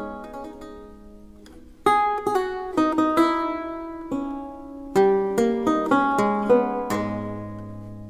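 Solo baroque lute playing a slow allemande in A minor: plucked chords and single notes that ring and die away. A chord fades out during the first second and a half, new chords are struck at about two and five seconds in, and a low bass note joins near the end.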